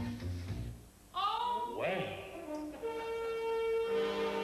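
A woman singing sliding, drawn-out notes to piano-keyboard accompaniment, with a long steady note held from about three seconds in.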